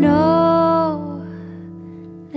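A female jazz singer holds one long sung note for about a second before it fades, over a soft accompaniment of guitar and piano.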